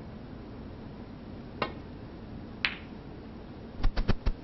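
Snooker balls: the cue tip strikes the cue ball, then about a second later a sharper, ringing click as the cue ball hits an object ball. Near the end a quick cluster of clicks and low knocks follows as the cue ball goes in-off into a pocket, a foul.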